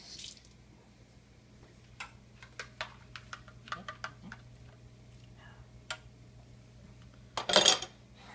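A spoon stirring a thick liquid mixture in a plastic cup, with irregular light clicks and knocks against the cup's sides, and a short louder noise near the end.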